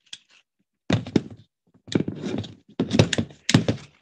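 Handling noise from a glued placemat-and-foam hat being picked up and held, close to the microphone. About a second in, a series of dull knocks and rubbing begins, in four short clusters.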